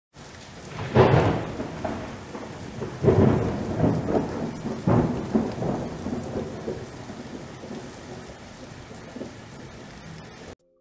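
Thunderstorm sound effect: steady rain with loud rolls of thunder about one, three and five seconds in, dying away toward the end.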